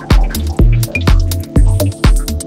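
Minimal house electronic track: a steady four-on-the-floor kick drum at about two beats a second, with a deep bassline between the kicks and short, high pitched blips.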